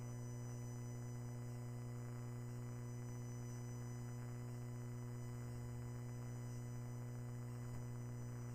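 Steady low electrical hum with a ladder of fainter higher overtones, unchanging throughout, typical of mains hum on a broadcast audio feed.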